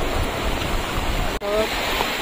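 Shallow seawater splashing and washing around a dog and a person wading through it, a steady rushing sound. It breaks off sharply about one and a half seconds in and is followed by a short voice call.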